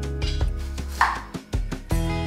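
A kitchen knife chopping through food onto a wooden cutting board: several strokes, the loudest about halfway through, over background music.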